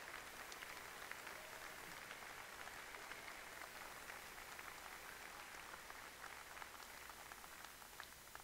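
Faint applause from a crowd: a dense patter of many hands clapping that thins out near the end.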